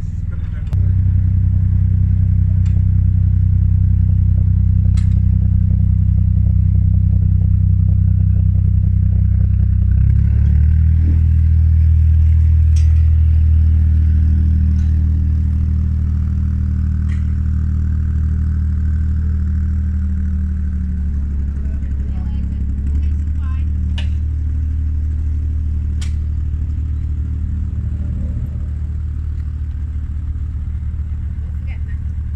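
Narrowboat diesel engine running steadily under way. It is throttled up about a second in, rises again in revs about a third of the way through, then eases back a few seconds later.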